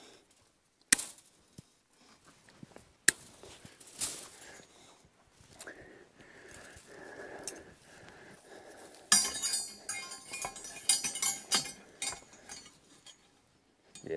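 Steel wire fence netting being handled: a few sharp metallic clicks, then from about nine seconds in some three seconds of dense clinking and rattling as the wire mesh is moved and pulled out.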